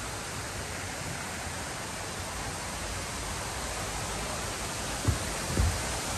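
Steady, even outdoor hiss with two short low thumps about five seconds in.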